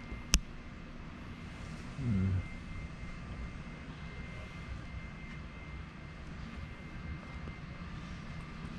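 Steady low indoor background hum with a faint, thin high-pitched tone running through it. A single sharp click comes just after the start, and a short murmured voice sound about two seconds in.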